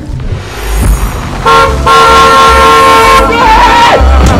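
Car horn blown: a short toot about one and a half seconds in, then a long steady blast lasting about a second and a half, ending in a brief wavering tone.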